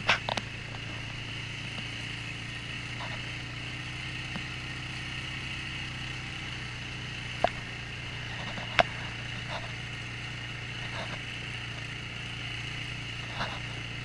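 ATV engine running at a steady speed along a bumpy dirt trail, a constant hum, with two sharp knocks a little past halfway.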